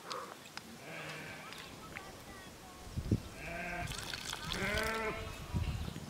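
Sheep bleating several times, with a short call about a second in and longer, wavering bleats in the second half.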